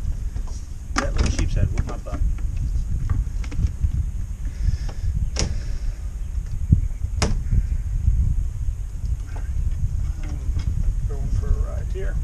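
Steady low rumble of wind buffeting an action camera's microphone, with a few sharp clicks and knocks from handling a small caught fish and its hook and tackle, about one, five and seven seconds in.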